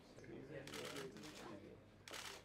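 Indistinct, quiet talk among several people, with a rapid rattle of clicking or rustling over it from about half a second in to past the middle.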